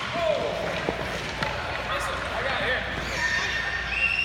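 Children's voices and calls on a hockey rink, with a few sharp clacks of hockey sticks hitting pucks, and a high held note near the end.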